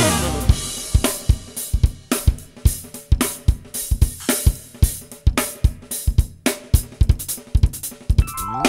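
Drum break in a smooth-jazz track: the drum kit plays alone in a steady beat of kick, snare, hi-hat and cymbal hits, with the saxophone and rest of the band out.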